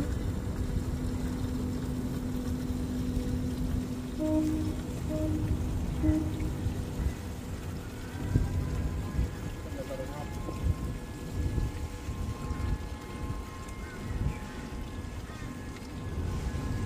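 Low, uneven rumble of wind and water around a small boat on a river, with faint background music of held notes and three short beeps.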